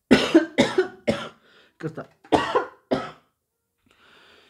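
A person coughing in a fit: about six short coughs in two quick runs over roughly three seconds.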